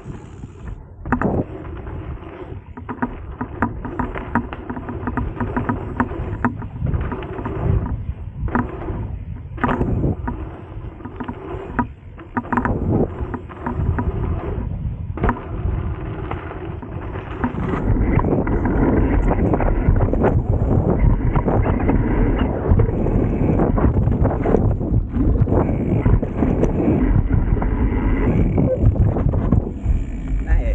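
Dirt jump bike riding down a dirt trail: tyres rumbling over packed dirt, with many short knocks and rattles from the bike over bumps. A bit past halfway the rumble turns louder and steadier.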